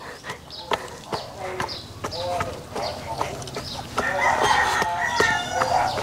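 Wooden garden rake scraping and knocking through loose, freshly tilled soil, breaking up clods. A rooster crows for about two seconds near the end.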